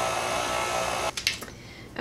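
Electric tilt-head stand mixer running on low speed, its flat beater working thick cheesecake batter. The motor stops abruptly about a second in, followed by a few light clicks.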